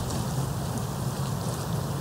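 Steady rushing noise with an uneven low rumble: wind buffeting the camera microphone outdoors.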